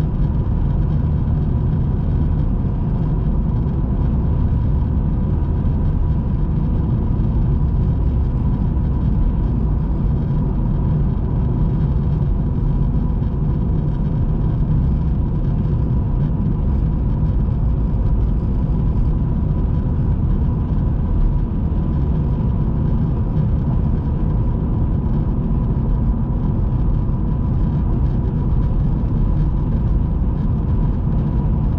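Steady road and engine noise of a car driving at highway speed, heard inside the cabin: an even low rumble with a faint steady high whine over it.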